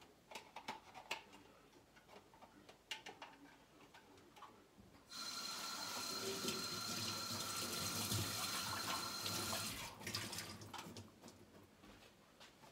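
Kitchen tap running in a steady rush with a faint whistle for about five seconds, starting about halfway through and shutting off abruptly, after a few light clicks and knocks of things being handled.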